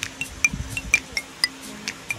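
Background music: a light melody of short, high chiming notes, several a second.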